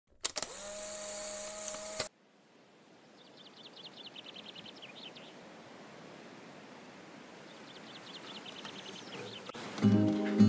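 A loud, steady electronic tone for about two seconds that cuts off suddenly. After it, faint ambience fades in with two short rapid high-pitched trills, the second near the end.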